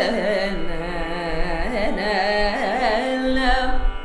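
Female Carnatic vocalist singing a phrase in raga Natakapriya with heavily oscillating, ornamented notes (gamakas) over a steady drone. The voice breaks off near the end, leaving the drone.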